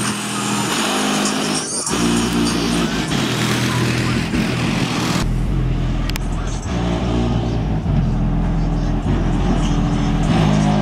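Loud music with vocals and heavy bass playing from the Chevy Caprice's aftermarket sound system, heard from outside along with the car driving slowly. The sound changes abruptly twice, at the cuts between shots.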